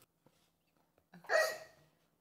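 After about a second of near silence, a young child makes one short vocal sound, a hiccup-like catch of the voice.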